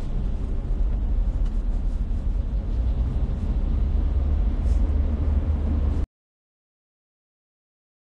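Steady low road and engine rumble inside a moving car's cabin, picked up by a phone microphone. About six seconds in it cuts off abruptly to complete silence.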